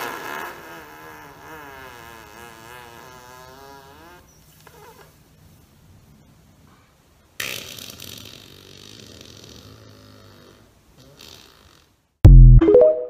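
A person breaking wind in tight jeans: a long, wavering, pitched fart of about four seconds that starts suddenly, then a second, hissier one starting about seven seconds in and lasting some three seconds.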